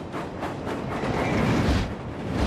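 Animated steam engine running along the track with a steady low rumble that grows about a second in.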